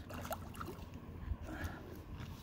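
Shallow lake water sloshing and lightly splashing as a hand moves a largemouth bass back and forth to revive it before letting it swim off, over a low steady rumble.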